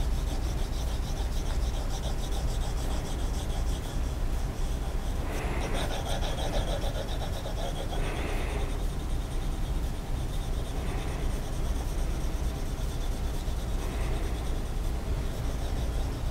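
Graphite pencil scratching across paper in continuous quick back-and-forth strokes, shading in a patch of parallel hatching.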